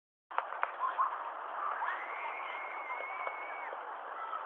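Small feet splashing in shallow water, with a few sharp splashes near the start, over a steady hiss of wind and water. A long, high, steady call is held for nearly two seconds in the middle.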